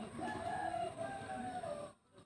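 One long pitched animal call, lasting about a second and a half and tailing off slightly near the end.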